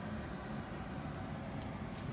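Steady low background rumble of room noise, with no distinct events.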